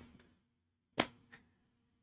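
Near-silent pause broken by one sharp click about halfway through, with a much fainter click a moment later.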